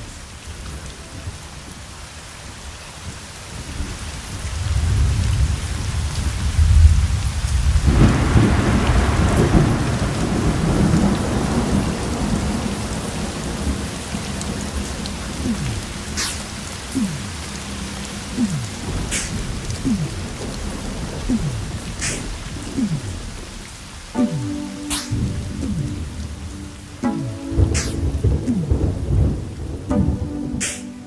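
Recorded thunderstorm: steady rain with a long roll of thunder building about four seconds in, followed by sharp cracks every few seconds. Music with sustained notes fades in under the storm near the end.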